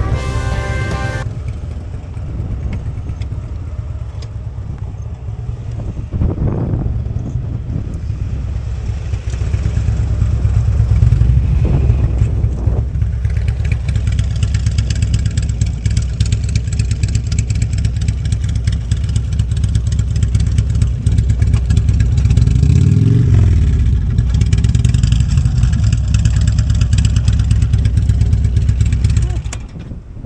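Touring motorcycle engines running at low speed, a steady low rumble with wind noise on the microphone. The engine note rises and falls briefly three times. Background music plays for about the first second.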